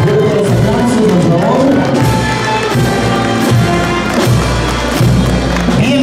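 Live band playing music.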